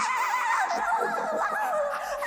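A woman's wordless, high warbling vocal improvisation: the pitch wobbles rapidly up and down and slides downward in the second half.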